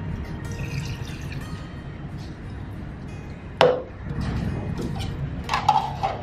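Water pouring from a plastic cup into the clear plastic reservoir of a countertop water flosser, running steadily for about three and a half seconds. Then a single sharp plastic knock, and a few lighter plastic clicks near the end as the reservoir and its lid are handled.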